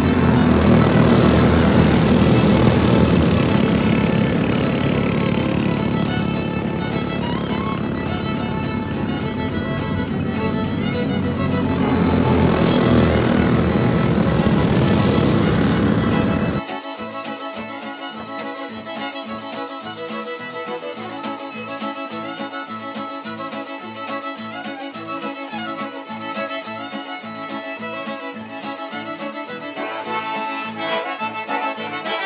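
Go-kart engines racing in a pack, mixed with fiddle music. About halfway through the engine noise cuts off suddenly, leaving only a music track with a steady beat.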